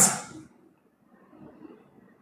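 A speaking voice trailing off in the first half second, then a pause of near silence with only faint room noise.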